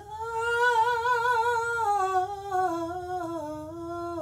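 A woman singing solo: she slides up into a long held note with vibrato, then carries the line slowly downward in small steps, without clear words.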